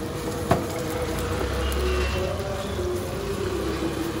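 A metal spatula strikes a flat iron griddle once, a sharp clack about half a second in, over steady low street-stall background noise.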